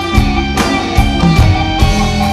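Live blues-rock band playing an instrumental passage: electric guitar with bass and a drum kit keeping a steady beat.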